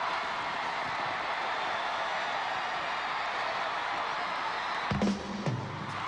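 Large arena crowd cheering and screaming, a dense wall of voices. About five seconds in, the band starts the song's intro with low pitched instrument notes over the crowd.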